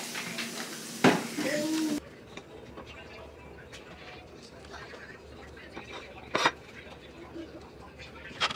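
A brief voice in the first two seconds, then faint clinks and scrapes of a plastic spatula on plates as food is dished out, with one sharper clack about six and a half seconds in.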